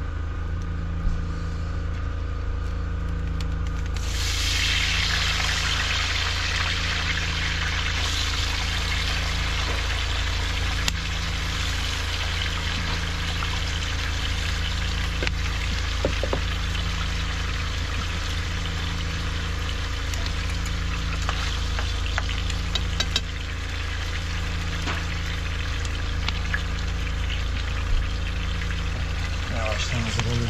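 Wood fire burning in a brick hearth under a frying pan and kettle, with scattered small crackles; a steady hiss sets in about four seconds in and holds, over a constant low hum.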